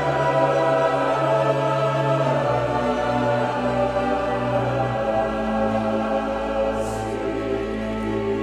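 A large mixed choir singing with orchestral accompaniment in sustained held chords. The harmony shifts twice, about two and a half and five seconds in.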